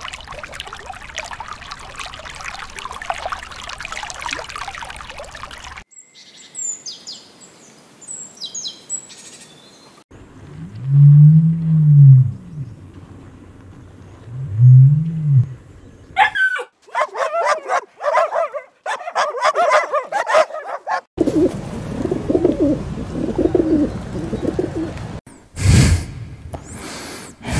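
A run of short, separate animal recordings. It opens with a stretch of water noise and some faint high chirps, then two deep booming calls from an ostrich, the loudest sounds here, then quick bird chirping and further calls.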